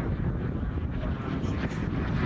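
Turbine engine of a Jet Legend F-16 model jet running in flight as a steady rushing sound, with wind rumbling on the microphone.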